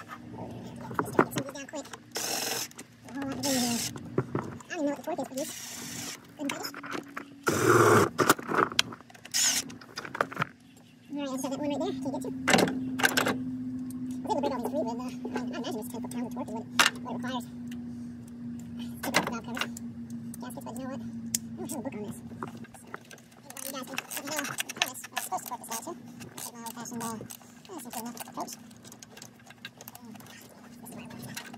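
A cordless power tool runs in a few short bursts during the first ten seconds, driving in the valve-cover bolts, with a steady hum through the middle and murmuring voice-like sounds throughout.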